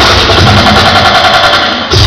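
Live human beatbox music through a club PA, the bass and drums dropped out to leave a buzzing, machine-like vocal sound, with a short dip in level near the end.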